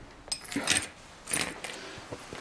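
Small hard objects clinking and rattling in two short bursts, about a second apart.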